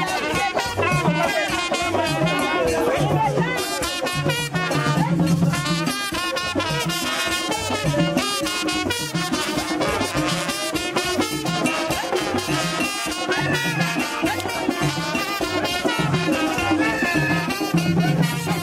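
Live Haitian Vodou ceremonial music: drums keeping a steady low beat while a crowd sings together over them.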